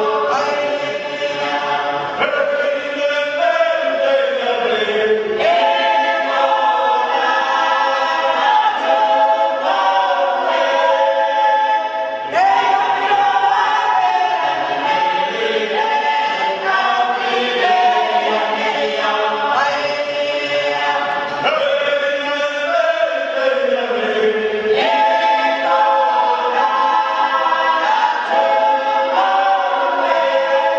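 Cook Islands imene tuki: a mixed choir of men and women singing in full harmony, the parts answering each other. Twice the voices slide down in pitch together.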